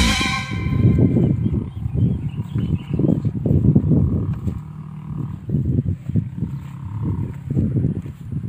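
Wind buffeting the microphone in irregular low rumbling gusts, over the faint steady running of a tractor engine working the field some way off.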